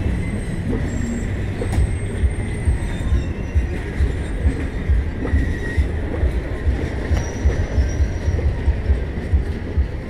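Indian Railways passenger coaches rolling past close by: a steady rumble with wheels thumping over rail joints in a quick, uneven beat, and thin high squealing tones from the wheels on the rails.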